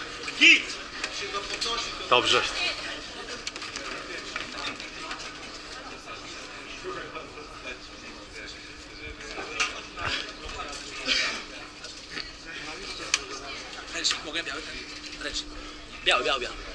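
Indistinct voices and short shouts of people around a boxing ring, echoing in a large hall over a steady low hum; the loudest shout comes about half a second in.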